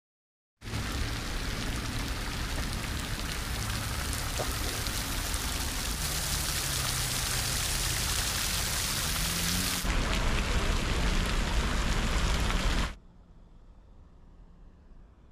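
Steady rain falling. It starts about half a second in, gets louder about ten seconds in, and cuts off suddenly a second before the end.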